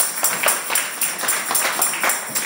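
Congregation clapping hands in a steady rhythm, about four claps a second.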